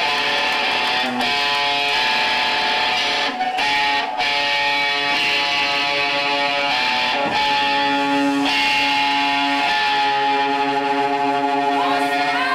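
A loud, distorted electric guitar played through an amplifier stack, holding ringing chords with a few short breaks between them.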